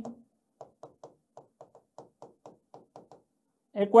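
Marker pen writing on a paper sheet fixed to a board: a quick run of about a dozen short, faint strokes over two and a half seconds.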